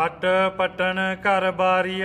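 A man's voice chanting a line of Punjabi devotional verse in a slow melodic recitation, holding each syllable on a steady note with short breaks between.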